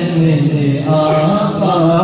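Unaccompanied male voice singing a naat, drawing out long, gliding notes, with a new phrase starting about a second in.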